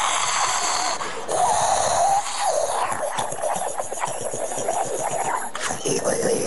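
A man vocally imitating an espresso machine's steam wand heating milk, his hand cupped to his mouth: a long hissing, gurgling noise that wavers in pitch.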